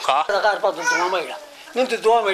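Speech: a man talking in Somali into interview microphones, with no other distinct sound.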